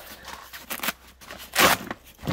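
Fabric tackle bag being handled and opened: short rustles of the stiff canvas, then one loud, sharp rasp about a third of a second long near the end.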